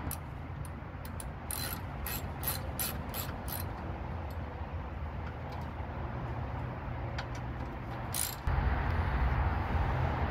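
Ratcheting clicks in short strokes, about three a second for a few seconds and once more near the end, made while fastening at the radiator and fan mount. A steady low rumble lies underneath and grows louder near the end.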